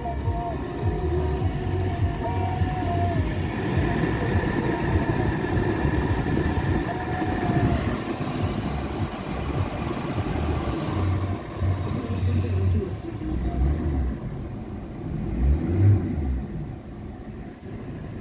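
Steady low rumble of a motor vehicle, easing off over the last few seconds.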